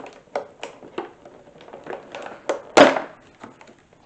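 Plastic clamshell salad container being pried open: a run of crackles and clicks from the stiff plastic, with one loud crackle about three quarters of the way in.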